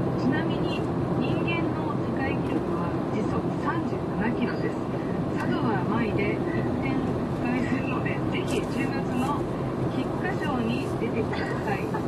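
A talk-radio voice plays over the steady drone of a car driving in town, heard from inside the car.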